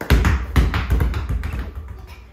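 Basketballs bouncing on a wooden floor: a quick, irregular run of thuds from more than one ball, the loudest just after the start.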